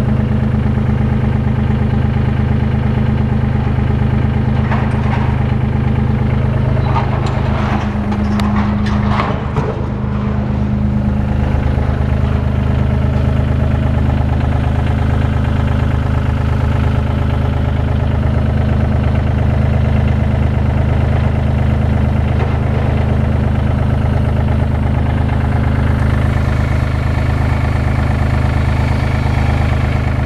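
Komatsu WA20-2E wheel loader's 1,200 cc three-cylinder diesel engine (3D78AE) idling steadily, with a few light knocks about five to ten seconds in.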